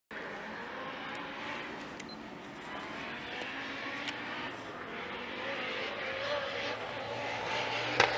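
Distant rally car engine, a faint drone wavering in pitch and growing slightly louder toward the end, heard over open-air background noise.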